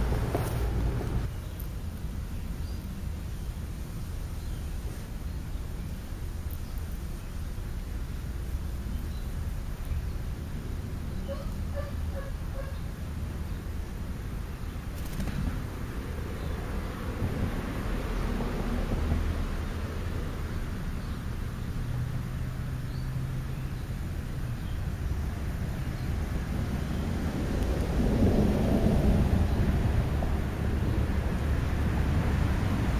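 Steady low outdoor rumble, with a short run of about four faint high notes a little before halfway and a swell in level near the end.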